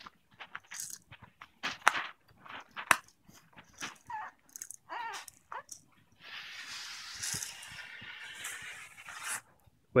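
Quiet light clicks and taps from a baby handling a plastic rattle, with a few small baby vocal sounds in the middle. About six seconds in comes a breathy, rustling noise that lasts about three seconds.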